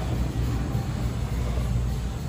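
Steady low hum of workshop background noise, with no distinct event.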